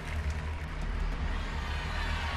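A crowd cheering and applauding over background music with a pulsing low bass.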